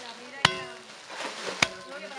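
Steel hand tamper struck down onto an earth-filled superadobe bag to compact it: two sharp thuds about a second apart, each with a brief metallic ring.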